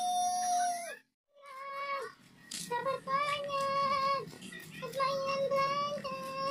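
A young child's high voice in a series of long, level wailing notes, each about a second, with a short break about a second in.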